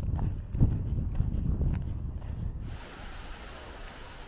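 Wind rumbling on the microphone over a walk along an outdoor track, with a few light taps. About two and a half seconds in it cuts to a quieter, steady outdoor hiss.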